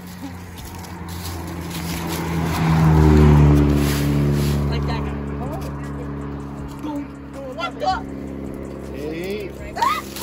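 A car passing on the road close by: its engine and tyre noise swell to the loudest point about three seconds in, the pitch drops as it goes by, and then it fades away.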